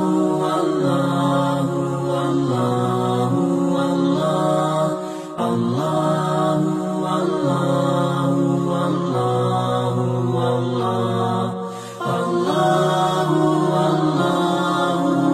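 A devotional Islamic chant (dhikr): a voice singing "Allah" in long, drawn-out held notes that step slowly between pitches. It breaks off briefly twice, about five and about twelve seconds in.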